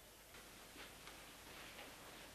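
Near silence: quiet room tone with a few faint soft ticks and rustles.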